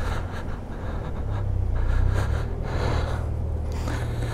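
Motorcycle engine running at low speed as the bike rolls slowly, a steady low hum that swells a little in the middle.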